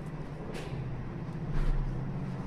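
A steady low mechanical hum, like a motor running, with a brief hiss about half a second in and a low rumble swelling near the end.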